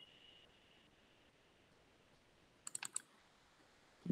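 Near silence, then a quick run of about four computer keyboard clicks near the end. A faint high tone fades out in the first second.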